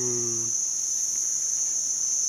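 A steady, high-pitched insect chorus droning without a break.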